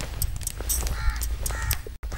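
Crows cawing, several short harsh caws in a row, over a low steady rumble.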